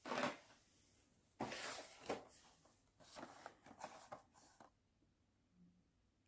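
Crinkly plastic packaging rustling and crackling in three short bouts as a toy-car blister pack is handled, then going quiet for the last second or so.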